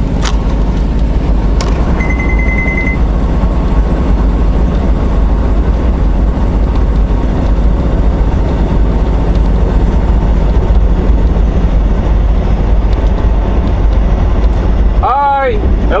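Steady engine and road noise of a semi-truck driving at highway speed, heard from inside the cab. About two seconds in comes a short run of rapid electronic beeps lasting about a second.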